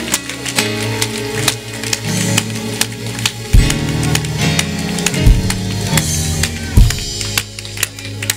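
Instrumental stretch of a gospel worship song played by a church band: a drum kit with regular cymbal strokes and a few heavy bass-drum hits over a bass line and held chords.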